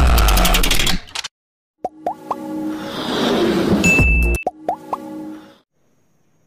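Logo-animation sound effects with music: a loud, bass-heavy music hit that cuts off about a second in, then quick pops with short rising pitch sweeps, a swelling whoosh, a brief high beep and more pops, fading out near the end.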